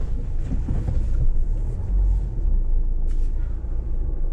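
Car driving along a road, heard from inside the cabin: a steady low rumble of engine and tyres, with a short hiss about three seconds in.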